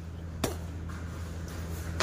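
A single sharp metallic clink about half a second in, as a light barbell with loose plates is pulled up from the thighs, over a steady low hum.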